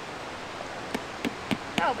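A rock pounding a tent stake into the ground: three sharp taps starting about a second in, roughly three a second.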